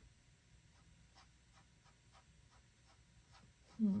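Small paintbrush dabbing and stroking paint onto a canvas: faint, soft ticks about three a second.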